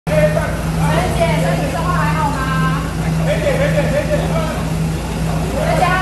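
A prison van's engine idling with a steady low hum, with several people's voices talking and calling over it.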